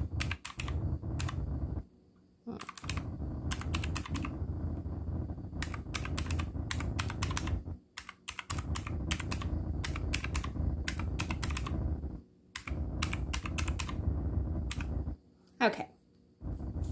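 Round, typewriter-style keys of a pink calculator being pressed in quick runs of clicks, broken by a few short pauses.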